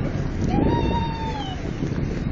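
Wind on the microphone and the low rumble of a boat under way. About half a second in comes one drawn-out call, about a second long, that rises and then falls in pitch.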